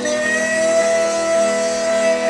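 Live street-busking music: guitar accompaniment with one long, steady note held over it.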